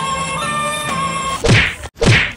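Background music with a flute-like melody, cut off about a second and a half in by a loud whack sound effect. A second whack follows at the very end.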